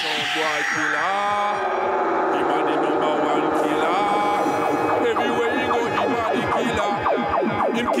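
Electronic psychedelic trance music: synthesizer glides and quick falling blips, growing denser from about halfway through, with a voice-like sampled sound.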